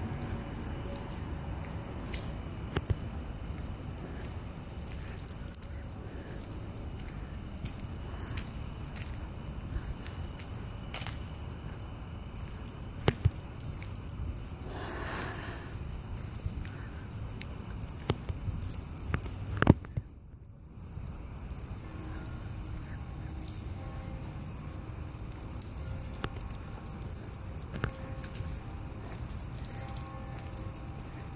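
Street background noise picked up by a handheld phone while walking, with scattered clicks and light handling knocks. From about two-thirds of the way in, faint distant church bells ring steadily.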